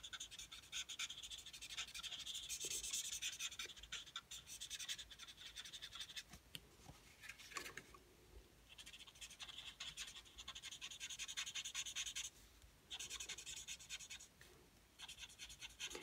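Faint scratching of an alcohol-marker blender tip (Stampin' Blends Color Lifter) rubbed back and forth on cardstock, in runs of strokes with brief pauses. The strokes are lifting and blending out the shadow color.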